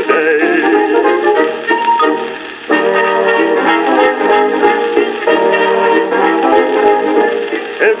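An old gramophone record playing on a portable record player: an instrumental passage of a dance-band song between sung verses, with no treble and scattered surface ticks. The band drops briefly softer about two and a half seconds in, then comes back fuller.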